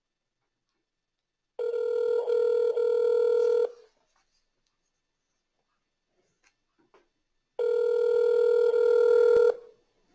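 Telephone ringback tone on an outgoing call: two rings of a steady tone, each about two seconds long, starting about six seconds apart, with silence between them while the call goes unanswered.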